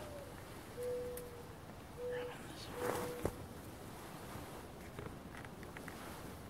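Mourning dove cooing: the end of a note that slides up and down, then three level, low coos about a second apart. Faint footsteps in snow and a sharp click are heard around the third coo.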